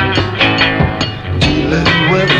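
Late-1960s British psychedelic garage rock recording: a band with electric guitar over a steady beat.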